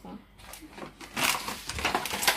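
Quiet for about a second, then soft rustling and handling noise.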